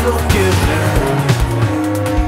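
Electronic music made entirely on an analog modular synthesizer: a steady bass line under a regular synthesized beat, with pitched synth notes, a few of them gliding.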